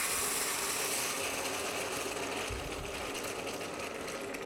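Hot water poured in a steady stream from an electric kettle into a stainless steel stockpot: a continuous splashing hiss that eases slightly toward the end.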